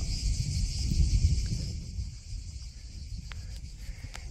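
A steady, high-pitched chorus of insects, crickets or cicadas, over an uneven low rumble that is strongest in the first two seconds and then fades.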